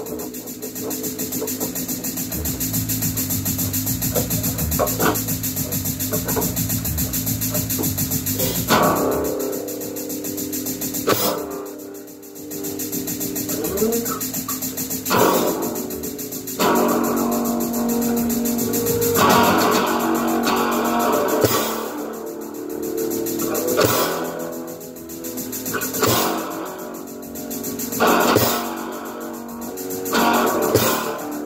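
Guitar played slowly: sustained ringing notes, then from about nine seconds in loud chords struck every few seconds and left to ring.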